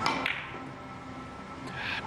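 A single sharp click of carom billiard balls colliding at the start, with a short ringing after it, as the cue ball strikes the object ball in a three-cushion shot.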